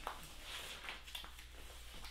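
Faint rustling and a few light ticks of vinyl record jackets and sleeves being handled, over a steady low hum.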